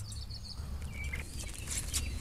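A few brief bird chirps, one at the start and another about a second in, over a steady low rumble, with some short clicks and rustling near the end.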